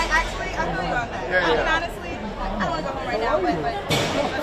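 Several people talking over one another in an excited greeting, overlapping voices and exclamations with no single clear speaker.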